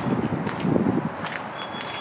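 Footsteps and handheld camera handling noise, with a thin high electronic beep coming in near the end.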